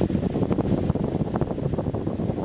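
Wind noise from a standing electric fan on its strongest setting blowing straight onto a Canon EOS Kiss X7i DSLR's built-in microphone, with no external mic or windscreen. It is a dense, fluttering low rumble of air buffeting the mic.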